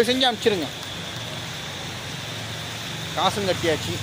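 A man's voice in two short bursts, at the very start and again near the end, over a steady background hiss with a low hum beneath it.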